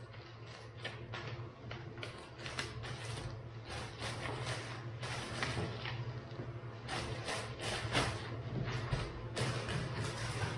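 Plastic bags and paper comic books being handled and pushed into a bag: irregular crinkling and rustling, busier in the second half, over a steady low hum.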